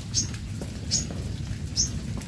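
A small bird chirping: three short, high chirps, each rising in pitch, about one a second, over a low steady hum.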